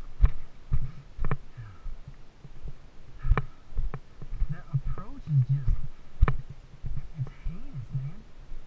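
Footsteps on granite talus: irregular heavy thuds, a few seconds apart, close to the microphone as climbers walk over the boulders. A few low voiced sounds from a climber come about five seconds in and near the end.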